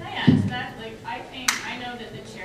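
Low voices in the room, with a dull thump about a quarter of a second in and a single sharp click about a second and a half in.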